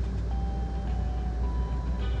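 Passenger train rolling along, heard from inside the car as a steady low rumble. Thin steady high-pitched tones come and go over it, starting about a third of a second in and changing pitch about halfway through.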